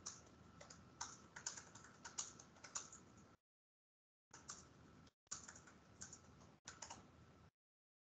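Quiet typing on a computer keyboard: quick, irregular keystroke clicks in two runs, with a pause of about a second between them.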